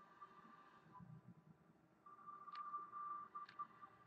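Near silence: a faint steady high-pitched whine, with two faint mouse clicks about a second apart in the second half.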